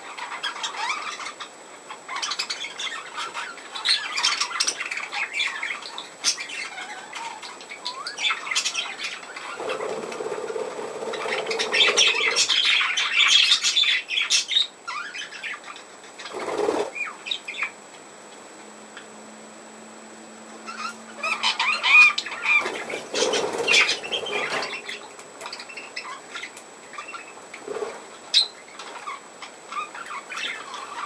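Budgerigars chattering with quick chirps and warbling, and wings fluttering as birds land and take off. The chatter swells into louder flurries about halfway through and again about two-thirds of the way in.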